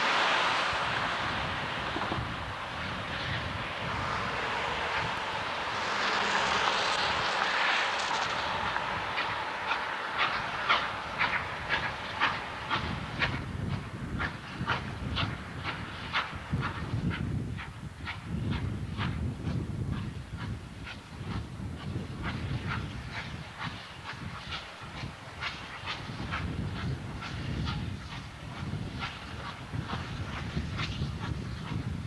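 Norfolk & Western J-class steam locomotive 611 and its passenger train rolling in over yard switches. A broad hiss fills the first several seconds. Then comes a run of sharp, quick clicking from the wheels over the rail joints and switch frogs, with a low rumble underneath.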